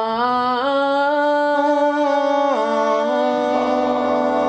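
A male voice singing long held notes a cappella, stepping up in pitch and later down; about three and a half seconds in, the other voices of a four-man a cappella group come in with harmony.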